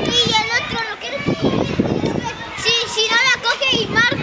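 Children's voices: chatter and calls of children playing, with a run of higher-pitched shouts about three seconds in.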